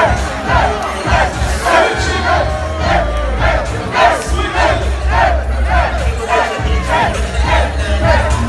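A crowd shouting and cheering loudly over dance music with a heavy, steady bass.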